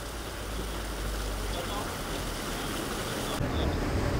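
Steady splashing of a stone fountain's falling water. About three and a half seconds in it cuts off, leaving a lower rumble of street ambience.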